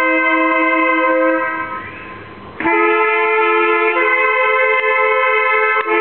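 A small brass-and-reed ensemble of trumpets and saxophones playing long held chords. The sound fades out for about a second near the middle, then a new chord comes in, and the harmony changes again a little later.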